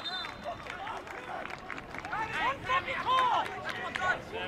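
Shouted voices from a soccer pitch, short high calls a couple of seconds in, over a low steady background of crowd noise.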